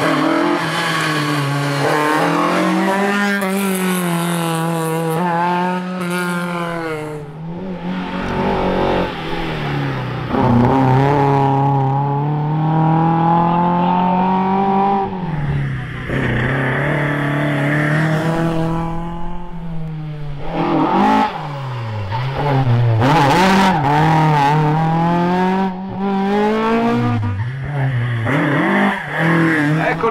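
Historic rally car engines revving hard past the camera on a tarmac stage, a Ford Escort Mk2 first. The pitch climbs through each gear and drops at shifts and lifts, and this happens over several runs in a row.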